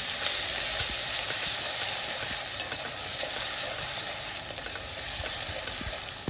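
Finely chopped onion sizzling in hot oil in an aluminium pot, stirred with a wooden spoon, with a few light taps of the spoon against the pot. The sizzle eases off slowly.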